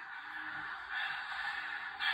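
Tinny, thin sound from a talking Christmas figure's small built-in speaker, carrying on steadily between its recorded spoken phrases.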